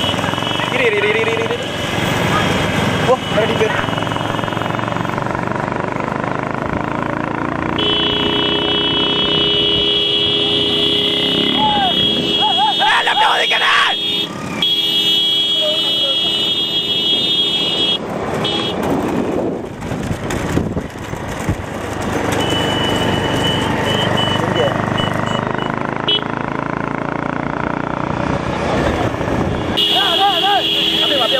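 Motorcycle engines running close by and men shouting, with a horn held steady for about ten seconds in the middle.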